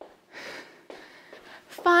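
A woman breathing hard from exertion, with one audible breath about half a second in and a few faint taps after it. She starts speaking right at the end.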